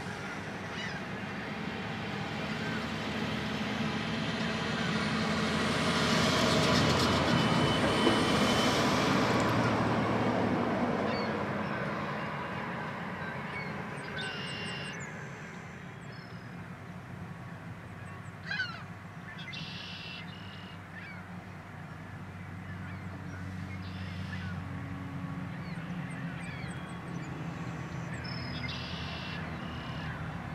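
Heavy diesel equipment running at the re-railing: engine noise builds to a peak about seven to eight seconds in, then eases back to a steady running sound. Short, higher-pitched sounds come and go over the second half.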